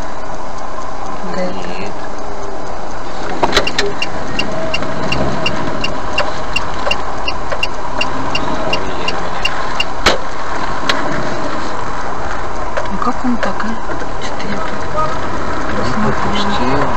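Car cabin noise while driving in traffic, with a turn-signal indicator ticking about three times a second for several seconds in the middle, and a couple of sharp clicks.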